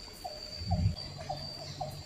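Outdoor animal chorus: a steady high insect drone with a short call repeating about twice a second. A low thump about a second in is the loudest sound, followed by a low steady hum.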